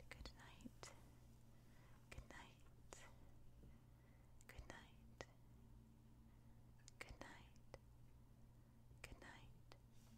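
Faint fingernail tapping and scratching on a glossy hardcover book cover: scattered sharp taps, with a soft scratching stroke about every two seconds.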